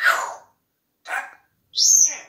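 African grey parrot giving three short, harsh calls, the first at the start, the next about a second in and the last, higher-pitched, near the end.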